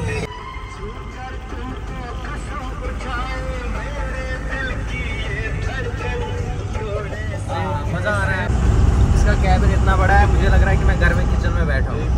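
Bus engine and road rumble heard from inside the cabin, with an old film song with singing playing over it. The rumble grows louder about eight seconds in.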